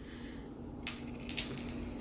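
Quiet room tone with a steady low hum, and a few faint short clicks in the middle, from a plant cutting and a knife being handled on a table.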